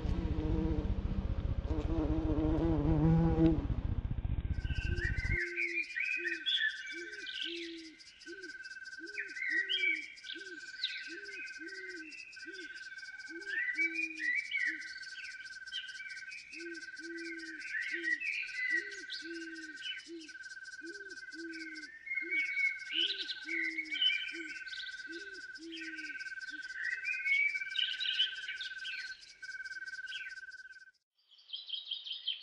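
A nature ambience of insects chirping in a steady, evenly spaced rhythm over a fast high pulsing, with bird chirps and a repeated lower croaking call. A louder, fuller sound with wavering tones cuts off suddenly about five seconds in, just after the chirping starts.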